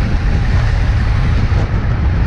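Wind rumbling on the microphone of a road-cycling camera while riding at about 31 km/h into a strong headwind: a steady low roar.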